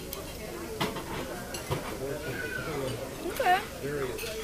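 Restaurant dining-room chatter with a few clinks of cutlery on plates. About three and a half seconds in comes a short, high, voice-like sound that rises and falls in pitch, the loudest thing heard.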